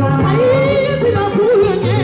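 A woman singing into a microphone over amplified backing music with a steady bass line, holding a long note a little after the start before her voice bends and wavers.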